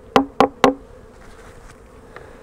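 Three quick knocks on wooden beehive parts in the first second, about a quarter second apart, over the steady hum of honey bees around an opened hive.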